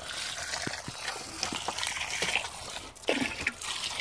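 Water running steadily into a 1939 Bolding automatic urinal cistern as it refills after flushing, with a few light knocks.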